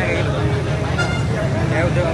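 Busy roadside street ambience: a steady low traffic rumble and background voices, with a short vehicle horn toot about halfway through.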